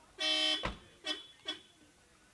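A car horn sounds a single short toot, followed at once by a car door slamming shut with a heavy thump. Two brief, higher-pitched blips follow about a second in.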